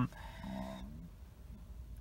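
A man's brief, soft hesitation hum of about half a second, over a faint steady low hum.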